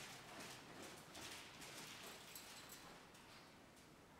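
Faint, muffled hoofbeats of a horse trotting on soft sand arena footing, fading away as the horse slows to a halt.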